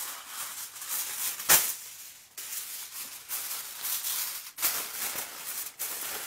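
Aluminium foil crinkling and rustling as it is spread over a roasting pan and pressed down around the rim, with a sharper crackle about one and a half seconds in.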